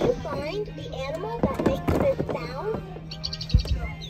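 Electronic sounds from a VTech baby activity toy as buttons are pressed: a chirpy, gliding melody with bird-like tweets. A quick run of high ticks comes about three seconds in, along with a few handling knocks.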